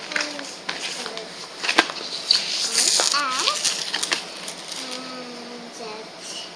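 A young girl humming and making short wordless sounds, one of them a wavering warble near the middle, over clicking and rustling from the packaging and cardboard inserts of new underpants as she handles them.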